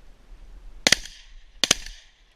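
Two shotgun shots fired at a flushed pheasant, a little under a second apart, very loud and sharp.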